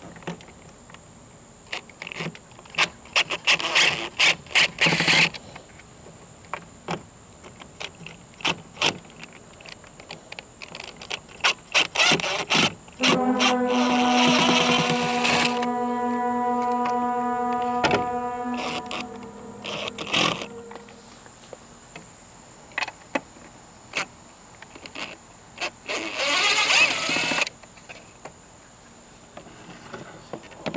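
DeWalt cordless impact driver backing screws out of a battery cover: short rattling bursts of impacting with small clicks of handling in between, and one longer run in the middle where the motor whirs steadily for several seconds before winding down.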